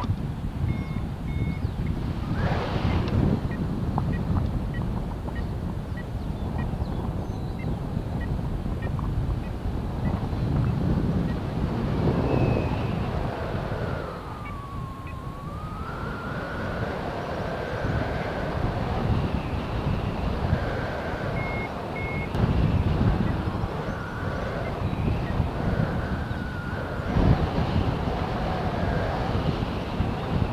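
Air rushing over the camera microphone in flight under a paraglider, with electronic beeps and a whistling tone that glides down and back up about halfway through, typical of a flight variometer signalling lift and sink.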